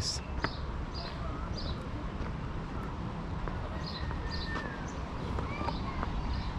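Small birds chirping in short, repeated calls among the date palms, over a low steady rumble.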